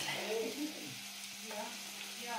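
Diced boiled potatoes and onion sizzling in a little oil in a pot, with a faint steady hum underneath.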